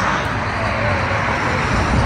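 Road traffic noise: a steady rush of vehicles passing on a highway.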